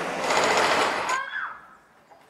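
Hydraulic breaker on a Cat backhoe hammering into rubble-strewn ground in fast, continuous blows, stopping about a second and a half in.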